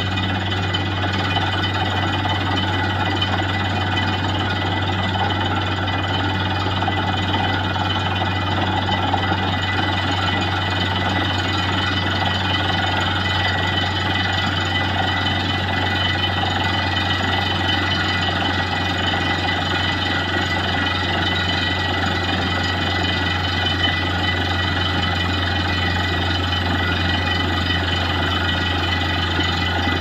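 Truck-mounted borewell drilling rig running steadily as it drills: a loud, unbroken machine noise with a strong low hum underneath.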